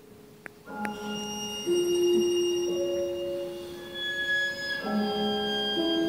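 Slow classical music of long held string notes, with piano, played for a ballet duet. A quiet moment at the start holds one faint click, then the held notes come in under a second in and shift every second or two.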